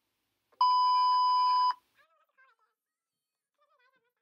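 A single steady electronic beep, about a second long, that starts and cuts off abruptly.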